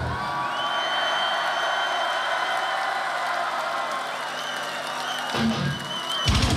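Live heavy metal band breaking off: the drums and bass drop out, leaving a single sustained high note ringing over a cheering crowd. A short low hit comes near the end.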